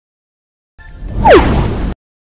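Whoosh transition sound effect: a swelling rush with a steeply falling tone at its loudest point. It starts about three-quarters of a second in and cuts off suddenly near the end.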